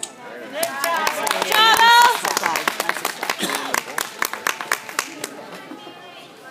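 Spectators clapping and cheering for a gymnast's vault: a high shouted cheer rises about one to two seconds in, the loudest moment, over quick handclaps that go on and thin out near the end.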